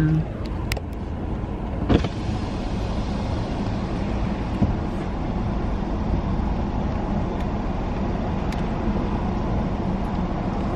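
Steady car road and engine rumble heard inside the cabin as the car is driven, with a couple of sharp clicks in the first two seconds.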